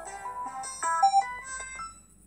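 A short, bright musical jingle of quick stepping notes plays over the show's title card. It stops at about two seconds.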